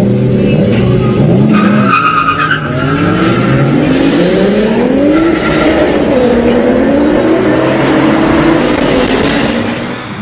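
Honda Hobbit moped's small two-stroke single-cylinder engine accelerating hard from a standing start, its pitch climbing in a series of rising sweeps, with a thin high whistle about two seconds in.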